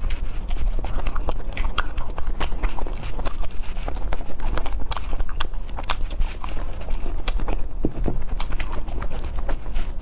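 Close-miked mouth sounds of chewing soft gummy jelly candy: a dense, irregular run of wet clicks and smacks.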